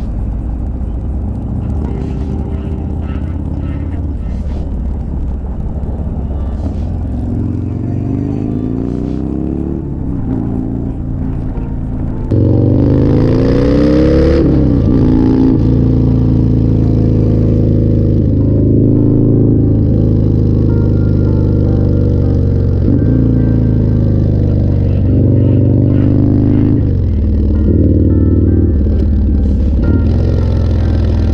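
Motorcycle engine running at road speed, its pitch climbing and dropping back several times as it accelerates and shifts through the gears. About twelve seconds in the sound suddenly becomes louder and closer.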